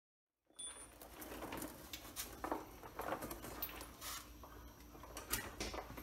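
Faint, scattered light clicks and knocks from hands and parts being worked on the car's underside while the lower frame member is freed from the engine, starting about half a second in over a low background hum.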